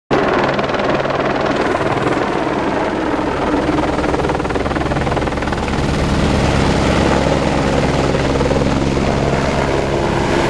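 Supply helicopter lifting off close by: the rotor beats steadily over a low, steady turbine drone, loud throughout and a little stronger in the second half.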